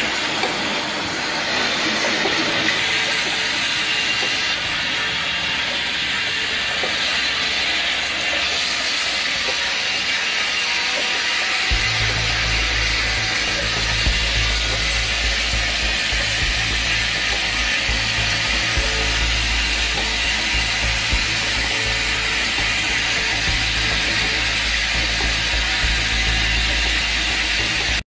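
Automatic bottle filling and rotary capping machine running: a steady, loud mechanical whir and clatter. A deep hum joins about twelve seconds in and carries on to the end.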